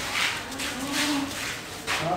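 Cow mooing once, a short low call starting about half a second in, with a few sharp knocks around it.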